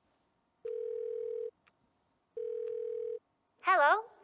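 Telephone ringing tone heard down the line: two long, steady, mid-pitched beeps about a second apart while the call waits to be answered. A voice starts just before the end.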